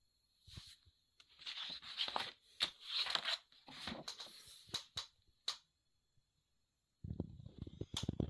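Glossy pages of a large coffee-table photo book being turned and handled: paper rustling and crinkling with a few sharp paper snaps, then a pause, then some low handling thumps near the end.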